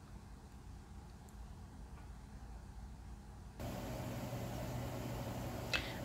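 A faint low hum, then about three and a half seconds in a steady hiss sets in: chicken pieces sizzling gently in hot vegetable oil in a pot.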